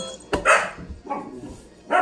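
Newfoundland puppy barking in short, loud barks: the loudest about half a second in, and another near the end.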